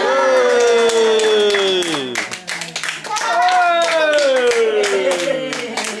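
A group of people clapping, with a voice giving two long falling cheers: one at the start and a second about three seconds in.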